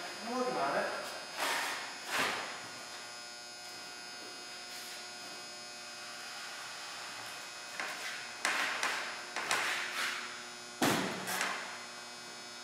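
A steady electrical hum runs under a few sharp knocks and thumps from a large wooden table being set down and handled. The knocks come twice in the first seconds, then in a cluster about two-thirds of the way in.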